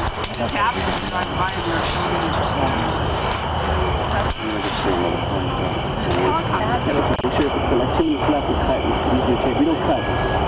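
Several people talking indistinctly over a steady low rumble, with no clear words.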